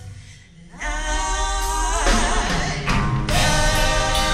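Female gospel vocal group singing in harmony with a live band. The music drops away briefly in the first second, the voices come back in strongly, and sharp drum and cymbal hits join in a steady beat near the end.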